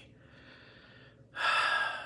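A man's breathing between sentences: a faint breath for the first second, then a sharp, louder intake of breath about a second and a half in.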